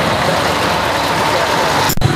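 Street procession noise: motor vehicle engines running close by, with crowd voices mixed in. The sound breaks off abruptly just before the end.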